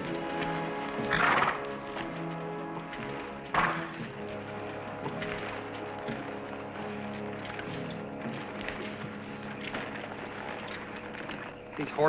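Background orchestral film music, with the hooves of several walking horses clip-clopping on a dirt trail. Two brief louder sounds stand out, one just over a second in and another about three and a half seconds in.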